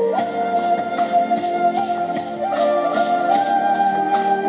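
Flute melody played into a microphone over steady amplified backing chords. It moves in short ornamental slides and turns, then settles on a long held note about three seconds in.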